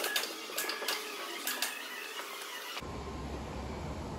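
Sharp metallic clicks and knocks as the steel rod is worked into the lathe chuck. About three seconds in they give way abruptly to a steady low workshop hum.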